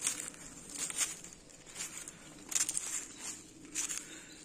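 Footsteps crunching on dry leaves and cut twigs, a few irregular steps.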